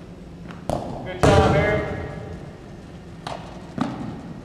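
Rubber playground balls being kicked and hitting the gym floor and wall: four separate thuds, the loudest about a second in, followed by a short pitched, voice-like sound.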